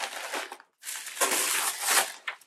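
Wrapping around a folded garment crinkling and rustling as it is unwrapped by hand, in two stretches with a short break just past halfway, the second longer and louder.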